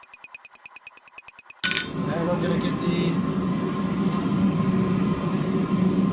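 Steady low roar of the forge running in the smithy. For the first second and a half it is replaced by a quieter stretch with a fast, even ticking, about a dozen ticks a second.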